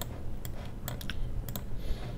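A few separate, irregularly spaced clicks from a computer keyboard and mouse, over a faint low hum.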